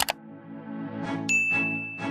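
Subscribe-button animation sound effects over soft ambient music: a sharp mouse click at the start, then a bright notification-bell ding a little over a second in, ringing on as one high, steady tone for about a second.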